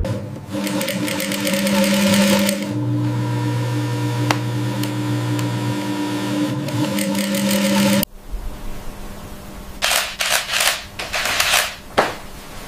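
Sewing machine stitching at speed, a fast even run of needle strokes that stops abruptly about eight seconds in. A few short noisy bursts follow near the end.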